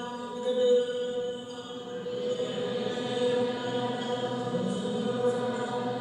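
A voice chanting a Gospel reading in the Ethiopian Orthodox liturgical style, holding long notes on a reciting tone that shifts slowly and without pauses.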